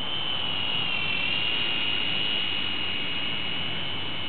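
Small RC toy helicopter modelled on a UH-60 Black Hawk, flying: a steady high-pitched whine from its electric motors and rotors, which dips slightly in pitch about a second in.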